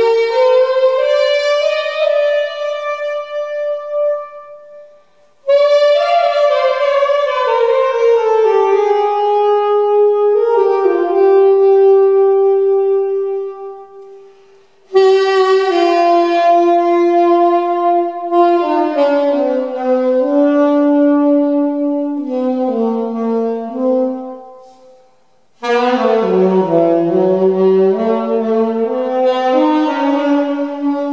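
Unaccompanied saxophone playing slow jazz phrases with long held notes, in four phrases broken by short pauses.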